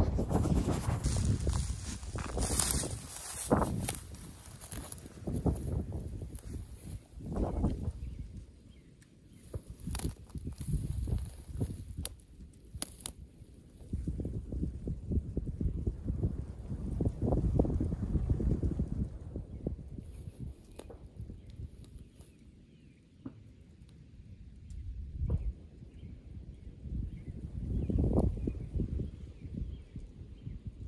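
Wind buffeting the microphone in gusts: a low rumble that swells and fades every few seconds, with a few light clicks near the middle.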